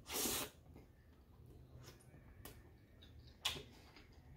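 Quiet mouth and eating noises while eating a chili cheese hot dog. A short breathy burst comes right at the start, then a faint click and a sharp click near the end.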